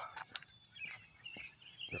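Faint bird chirps, with a few soft clicks in between.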